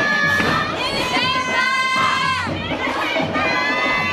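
A group of girls' voices shouting and cheering loudly, with one high shout rising and falling through the middle.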